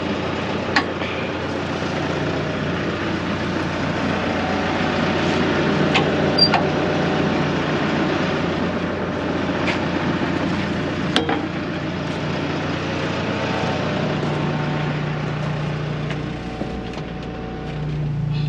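Vehicle engine running steadily, with a few sharp clicks and knocks over it; its low drone changes pitch near the end.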